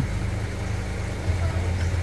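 A steady low engine rumble, as of an engine idling.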